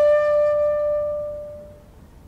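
Shakuhachi holding one long final note that fades away and stops near the end, closing the piece.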